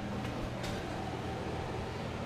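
Wall-mounted air conditioner running: a steady low hum with a faint higher whine.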